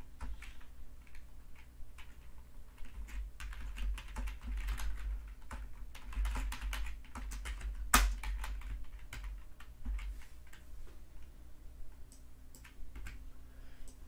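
Typing on a computer keyboard: irregular runs of keystrokes, with one sharper, louder key click about eight seconds in and fewer strokes near the end.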